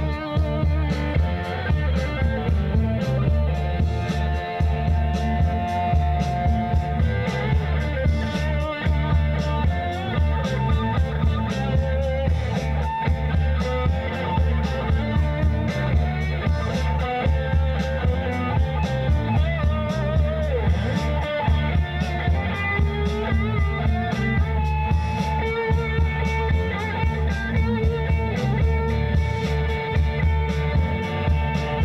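Live rock band playing an instrumental passage: electric guitars over bass and drums, with a lead guitar holding long notes that waver and bend.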